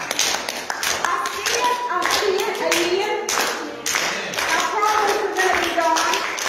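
A congregation clapping together in a repeating beat, with voices calling out and singing over the clapping.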